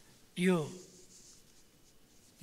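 A man's voice through a podium microphone says one short word, then pauses. The pause holds quiet room tone with a faint rustle.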